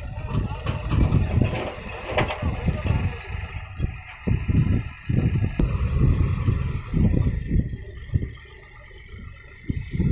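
John Deere 5050D tractor's three-cylinder diesel engine working under load as it drags a land leveller through loose sand, its sound coming in uneven low surges that ease off near the end.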